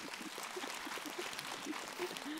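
Audience applauding in a theatre hall: steady, even clapping with a few faint voices mixed in.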